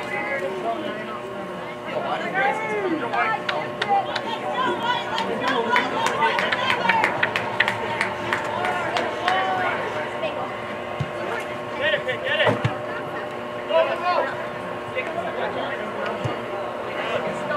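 Players and spectators shouting and calling out across an outdoor soccer field during play, with a run of sharp clicks near the middle and a few heavier knocks after it. A steady hum runs underneath.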